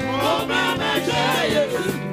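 Live gospel praise music: a woman's lead voice and choir singing, with vibrato, over band accompaniment.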